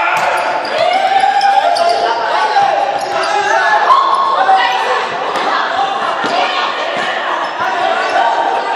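A group of young people shouting and calling out over one another in an echoing sports hall during a boisterous running game. Scattered short knocks and footfalls on the hard floor are heard among the voices.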